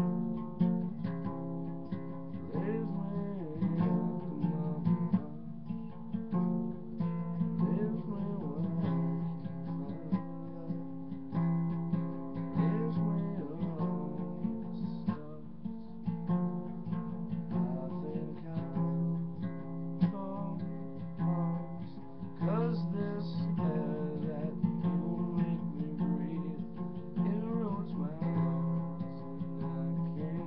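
Cutaway acoustic guitar strummed, its chords changing every second or two.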